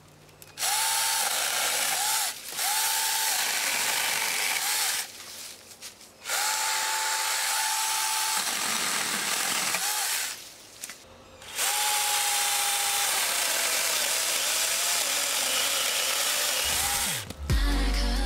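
Cordless 24 V mini electric chainsaw running in three bursts of about four to five seconds each, cutting through thin branches. Its high motor whine wavers as the chain bites into the wood. Music comes in near the end.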